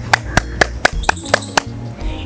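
One person clapping their hands quickly and evenly, about four claps a second, over background music.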